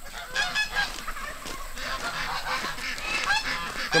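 A flock of farm fowl calling: many short, overlapping honking calls, repeated through the whole stretch.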